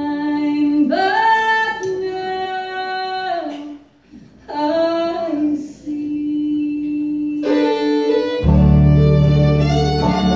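A woman singing a slow gospel song alone, unaccompanied, in long held phrases with short breaks. About three-quarters of the way through, a full bluegrass band comes in with fiddle, guitars and upright bass.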